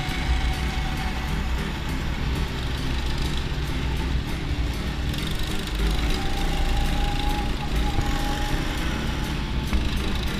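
Rental go-kart's small engine running steadily under throttle, heard from the kart itself with wind rushing over the microphone.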